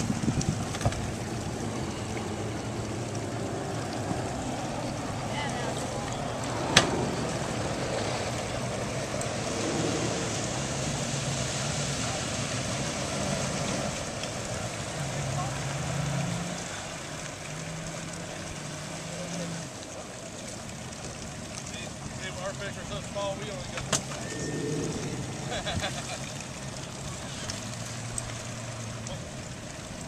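Outboard motor of an approaching bass boat running steadily across the water, louder for a stretch midway, with faint voices of people nearby and a sharp click about seven seconds in.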